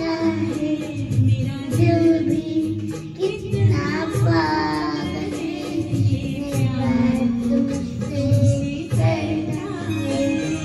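A young girl singing into a handheld microphone over a karaoke backing track with a steady beat. The melody rises and bends, with a clear upward glide about four seconds in.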